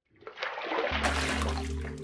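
Bathwater splashing and sloshing as a foot steps into a filled tub, with a low steady hum coming in about a second in.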